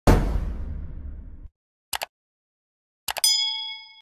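Edited-in intro sound effects: a sudden heavy boom that rings down over about a second and a half, two quick clicks, then a click and a bell-like ding that rings out and fades.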